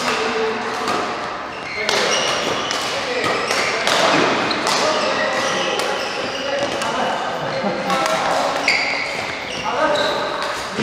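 Badminton doubles rally: rackets hitting the shuttlecock back and forth, a long run of sharp hits through the whole stretch.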